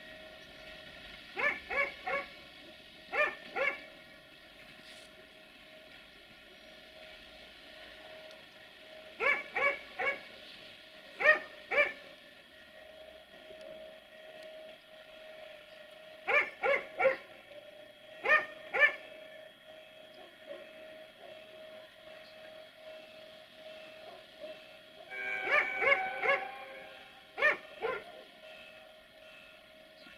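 A dog barking in short runs of two or three barks, repeated every few seconds, over a steady hum.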